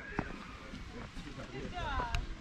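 Indistinct voices of people talking in the background, with a single sharp footstep knock on a stone slab shortly after the start.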